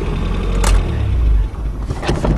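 Low engine and road rumble inside the cab of a 1984 Nissan 4x4 pickup while driving, with one sharp click a little past halfway through the first second. The rumble falls off about a second and a half in.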